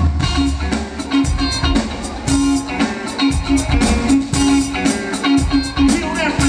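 Electric guitar playing a choppy, strummed funk rhythm part in quick, even strokes, over repeating low notes from the band.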